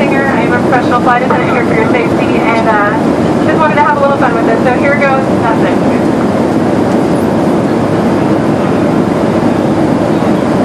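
Steady airliner cabin noise, engine and air rumble, with several people's excited voices over it for about the first five seconds.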